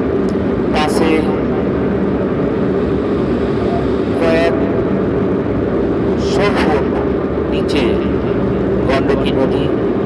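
Steady engine and road noise inside the cabin of a vehicle driving on a rough dirt road, with short bursts of voices a few times.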